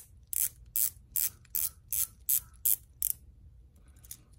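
Rotating bezel of an Invicta Hydromax Reserve stainless-steel watch being turned by hand, about nine sharp ratcheting clicks at a steady pace of two or three a second that stop about three seconds in.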